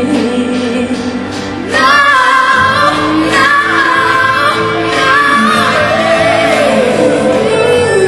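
Female pop vocalist singing live over a band accompaniment. Just under two seconds in she comes in louder with a high, sustained belted phrase that bends up and down.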